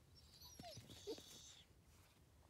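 A dog whining faintly: a few short, high-pitched whimpers with sliding pitch over about a second and a half, loudest about a second in.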